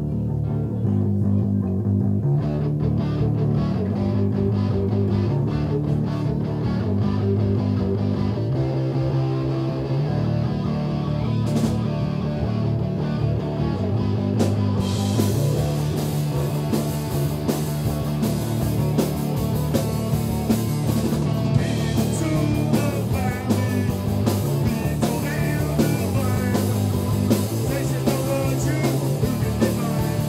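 Live rock band playing: electric guitars and bass guitar start together on a repeating riff, with a drum kit. A cymbal crash comes in about eleven seconds in, and the cymbals play fully from about fifteen seconds in.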